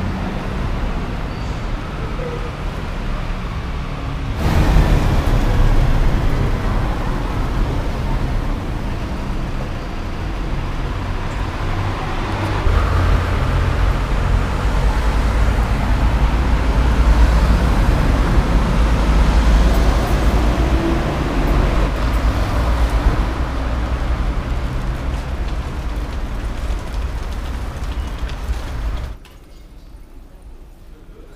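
Street traffic noise with cars passing, under a heavy low rumble. The sound changes abruptly about four seconds in, swells through the middle, and drops sharply near the end.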